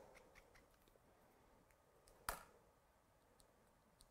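Near silence with faint ticks from a marker and clear stamp being handled on the craft mat, and one brief scratchy rustle a little past two seconds in.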